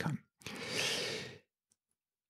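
A man's long audible breath close to the microphone, about a second long, swelling and fading, followed by a faint click or two near the end.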